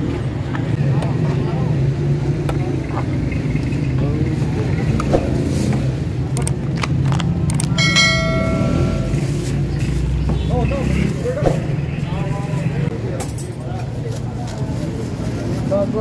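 Roadside street background: a motor vehicle engine hums steadily, with voices talking and a louder low rumble past the middle. A short pitched tone sounds about halfway through.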